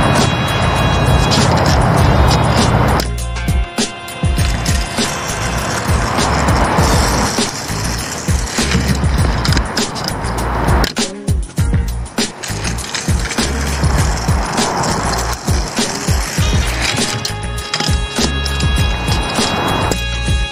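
Freeline skate wheels rolling over a concrete skatepark bank in several passes, each a few seconds long with short breaks between them. Background music plays underneath.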